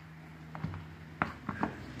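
Faint handling noise: a few light knocks and clicks as the old drill press's metal parts are moved on a workbench, over a steady low hum.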